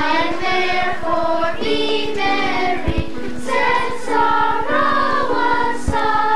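Children's choir singing together, young voices holding sustained notes and moving from pitch to pitch.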